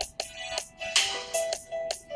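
Hip-hop instrumental beat: a melody of short held notes over sharp, quick drum hits.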